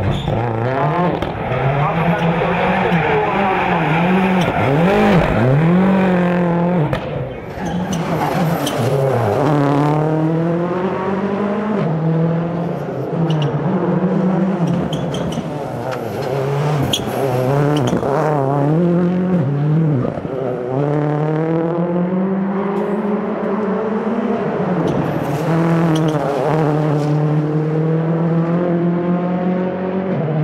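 Ford Focus RS WRC rally car's turbocharged four-cylinder engine revving hard, its pitch climbing and dropping again and again through gear changes and lifts, with tyre squeal as the car slides.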